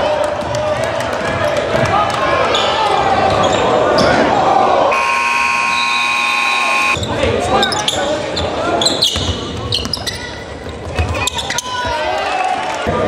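Gymnasium scoreboard buzzer sounding for about two seconds, about five seconds in, as the clock runs out at the end of regulation with the score tied. Crowd voices and a dribbled basketball bouncing on the court fill the rest.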